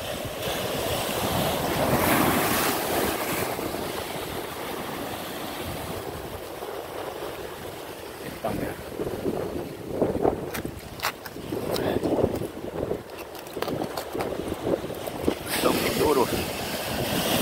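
Ocean surf washing over a rocky shore, with wind buffeting the microphone; the wash swells about two seconds in. In the second half, scattered sharp clicks and knocks.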